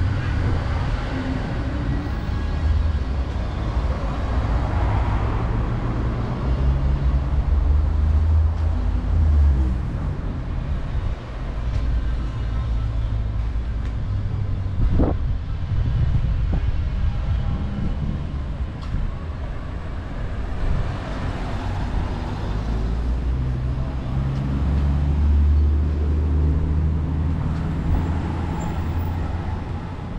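Road traffic on a busy suburban street: cars passing one after another, their tyre noise swelling and fading, over a steady low engine rumble that grows heavier twice, about a quarter of the way in and again near the end. A short sharp sound stands out about halfway through.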